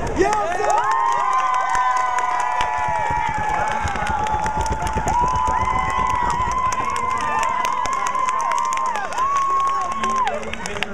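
Crowd of high-school students screaming and cheering, with many long high-pitched shrieks held over one another and scattered clapping.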